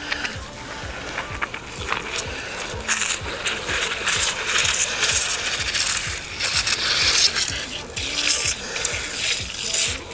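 Garden hose running with the water still on, spraying and splashing on the grass and the pressure washer, with small clicks and clinks as the hose fitting is handled at the pressure washer's inlet.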